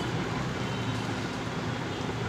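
Steady background noise: an even low rumble and hiss, with no distinct events.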